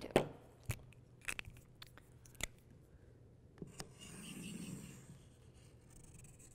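A few light clicks and taps of markers and a hammer being handled on a tabletop, then a felt-tip marker scratching along paper for about a second and a half as it traces around the hammer.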